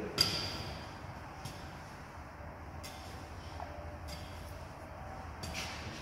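Pickaxe blows into sandy soil, about one every second and a quarter: the first, just after the start, is the loudest, a sharp metallic clink with a short ring, and the later strikes are dull and faint.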